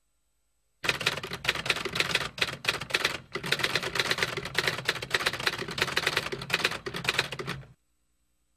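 Typewriter sound effect: a fast, unbroken run of key strikes that starts about a second in and stops shortly before the end.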